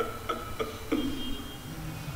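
The fading end of background music: a ticking beat with pitched notes, about three strokes a second, dying away about a second in and leaving a faint held low tone.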